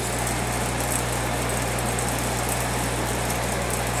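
Saltwater aquarium's filtration and protein skimmer running: a steady low electric hum under a constant even hiss.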